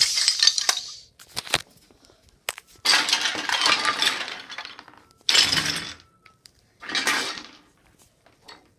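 Toy pieces, a toy house and small toy cars, clattering and tumbling as they are knocked down and swept about by hand in a pretend tornado. The clatter comes in bursts: one in the first second, a sharp knock a moment later, a long clatter from about three seconds to nearly five, and two shorter ones near the end.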